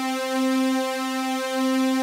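A single held synthesizer sawtooth note, steady in pitch, with a slight wavering from a chorus-style ensemble effect.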